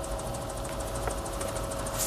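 Helicopter in flight: a steady low rumble of engine and rotor with a faint held whine over it.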